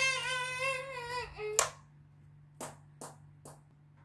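A high-pitched voice holds one slightly wavering note for about a second and a half, then a few light taps.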